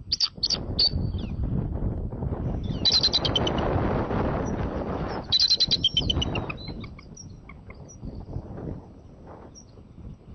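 Bald eagle calling: bursts of rapid, high-pitched chattering notes, a few near the start, then about three seconds in and again around five and a half seconds. The calls sit over a loud rushing noise.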